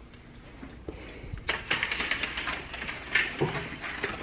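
A dog moving about excitedly at a sliding glass door. Rapid clicking and rattling picks up about a second and a half in and runs for a couple of seconds.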